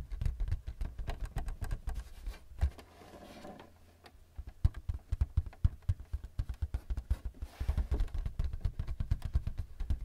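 Fingertips tapping quickly on the printer's plastic paper-support flap, with a softer rubbing stretch about three seconds in before the tapping picks up again.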